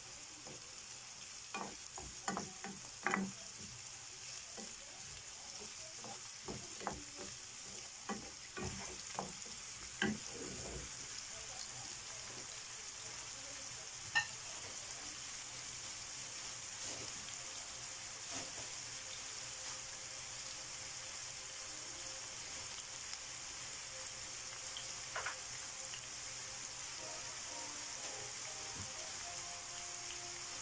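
Diced onion and bell peppers sizzling in a nonstick frying pan. For roughly the first ten seconds a wooden spoon stirs them, knocking and scraping against the pan. After that the steady sizzle goes on alone, with a couple of single knocks.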